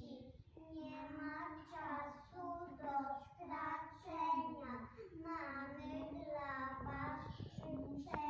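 A group of young children singing a song together, in sung phrases with short breaths between them.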